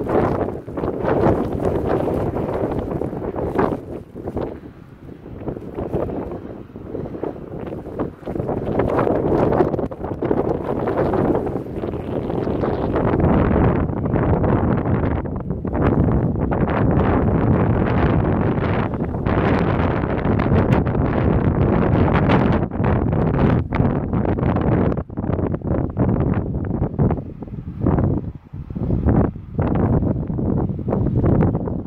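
Wind buffeting the phone's microphone in gusts, a loud rumbling noise that rises and falls, with brief lulls near the start and near the end.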